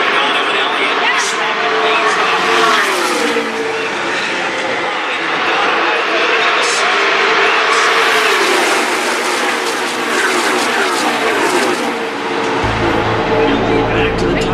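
A pack of NASCAR Cup cars with restrictor-plate V8s passing at racing speed, each engine note falling in pitch as the car goes by. Cars pass about three seconds in, the loudest, densest rush comes in the middle, and more cars fall away near the end, when a low rumble joins.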